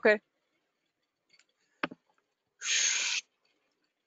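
A single click, then about half a second later a short breathy hiss into the microphone, like a sharp exhale, lasting about half a second.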